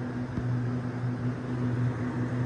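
Walk-in freezer's ceiling-mounted evaporator fans running: a steady hum with an even rush of air, and a faint knock about half a second in.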